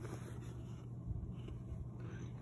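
Faint rubbing of a hand pressing and feeling along a denim jacket's pocket, the fabric brushing under the fingers, over a low steady hum.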